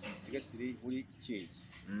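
A man's voice speaking in short, halting syllables.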